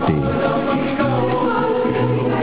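Background music: a choir singing long held chords.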